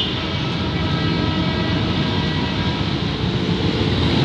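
Low rumble of a PNR Hyundai Rotem diesel multiple unit and street traffic at a level crossing, with a faint steady horn held from just after the start until near the end.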